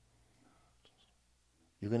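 Quiet room tone with a faint tick about a second in, then a man's speaking voice starting near the end.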